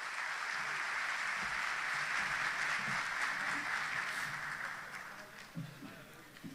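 Audience applauding at the close of a speech, a steady even clapping that fades out about five seconds in.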